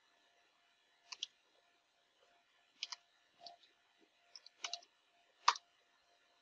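Computer keyboard keystrokes: a few scattered clicks in small clusters, the loudest shortly before the end.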